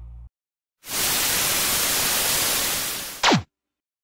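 Static hiss, like a dead TV channel, lasting about two and a half seconds, the end of a piece of music having cut off just before it. The hiss ends in a quick falling tone with a brief loud peak, then cuts off suddenly.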